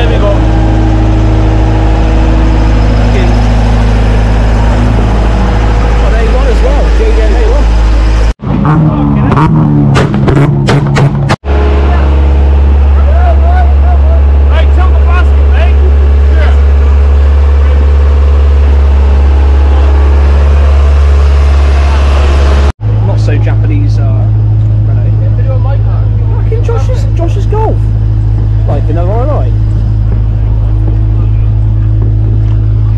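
Engine of a self-propelled boom lift running steadily, a loud low hum with voices over it. The hum breaks off and changes pitch abruptly three times, about 8, 11 and 23 seconds in, with some clicks between the first two breaks.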